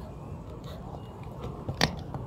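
Aluminium-foil butyl waterproofing tape crinkling and crackling as it is peeled from its backing and pressed by hand onto a corrugated metal roof sheet, with one sharp snap near the end.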